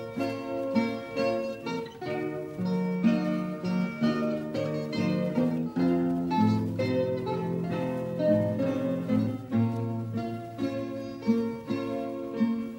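Instrumental introduction of a Coimbra fado: Portuguese guitars playing a plucked melody over a classical guitar (viola) accompaniment.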